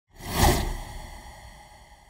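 Whoosh sound effect of an animated logo intro, swelling quickly to a peak about half a second in and then fading away slowly.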